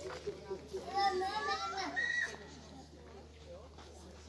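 Children playing: a child calls out in a high voice for about a second, starting about a second in, over quieter background chatter.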